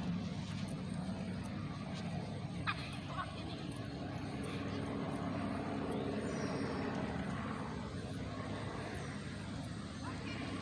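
Steady low hum of motor-vehicle noise, with a couple of brief faint high calls about three seconds in.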